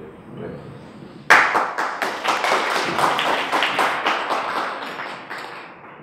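Audience clapping: a burst of applause starts suddenly about a second in, then thins out and dies away near the end.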